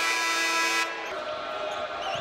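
Basketball game sound in an arena: a steady held tone of several pitches stops abruptly a little under a second in, followed by quieter crowd noise and the sounds of play on the court.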